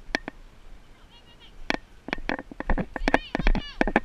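A high-pitched voice calling out near the end. Before it come irregular sharp clicks and knocks, with a low rumble underneath.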